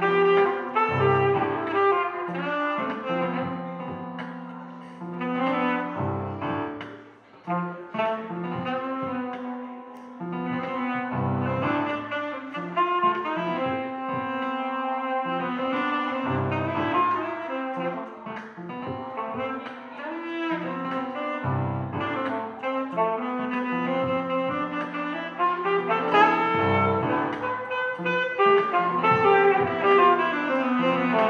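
Alto saxophone playing a jazzy melodic line over a sustained low bass accompaniment, with a brief lull about seven seconds in.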